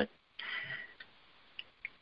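A man's faint breath between sentences, followed by three small mouth clicks, heard through the studio microphone.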